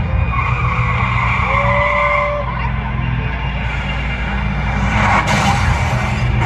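Stadium rock concert heard from far up in the stands: a steady low drone from the PA over a wash of crowd noise. About five seconds in, a loud rushing burst comes in as pyrotechnic flames shoot up from the stage.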